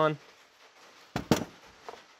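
Two or three sharp metallic clinks a little past a second in, with a faint click near the end: rotary-engine front parts (counterweight and washers) being handled and set down against each other on the workbench.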